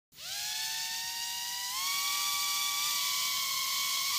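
Skeye Nano micro quadcopter's four tiny motors and propellers spinning up: a high-pitched whine of several close tones that rises quickly as they start, then steps up in pitch twice as the throttle is raised.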